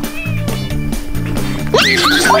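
A young kitten meowing in short, high, arching calls over steady background music.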